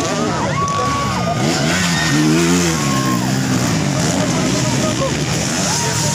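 Motocross bike engines revving hard and easing off as the riders go over the jumps, the pitch rising and falling again and again.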